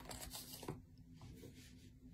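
Faint rustling handling noise with a single light click a little before the middle, over a low steady hum, as hands settle onto an electronic keyboard before playing.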